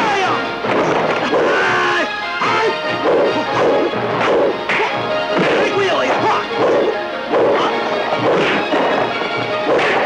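Kung fu film fight soundtrack: dubbed punch-and-kick impact effects, one every second or so, over dramatic music.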